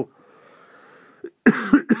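A man coughing: two quick, loud coughs about one and a half seconds in, after a second or so of faint breathy hiss.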